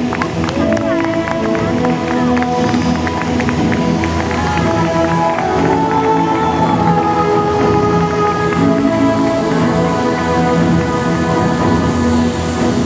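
Music with long held notes that shift slowly from one chord to the next, playing at a steady, loud level.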